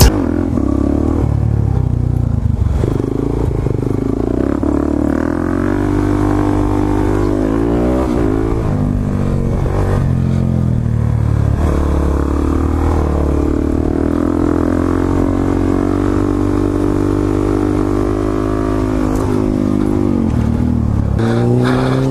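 Suzuki DR-Z400SM supermoto's single-cylinder four-stroke engine being ridden, heard from the rider's seat. The revs rise and fall repeatedly, climbing and holding high through the middle and dropping back near the end.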